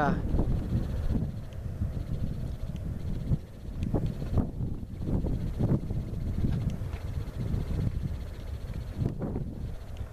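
Low, uneven rumble of wind on the microphone, with faint voices now and then.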